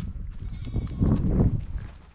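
A Boer goat giving a short, rough, low call about a second in, among the goats in the pen.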